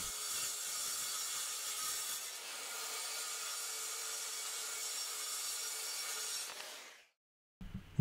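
Circular saw cutting through 5/8-inch plywood, a steady rasping run that fades out about seven seconds in.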